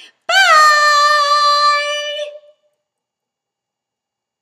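A woman's voice holding one high, sung note for about two seconds. The note rises and dips briefly at the start, then stays level and fades out about two and a half seconds in.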